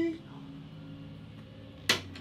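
A small scoring token set down on a wooden tabletop: one sharp click near the end.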